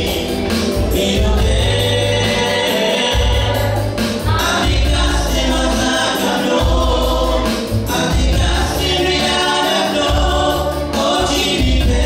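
Live gospel worship song: a woman singing into a microphone over an electronic keyboard playing chords and a deep bass line, amplified through a PA system.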